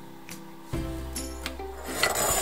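Background music with sustained notes, a new chord coming in under a second in, over a few light scrapes of a serving spoon on a plate as salad is spooned out.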